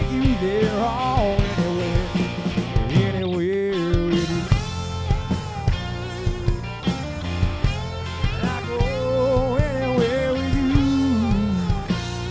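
Live rock band playing loudly: electric guitar, bass and drum kit, with a lead line of bending, wavering notes. The bass and drums drop out for a moment about three and a half seconds in, then the full band comes back.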